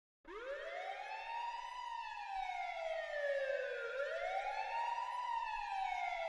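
A wailing siren, its pitch sweeping slowly up and down: it climbs, sinks back over about two seconds, and climbs again about four seconds in.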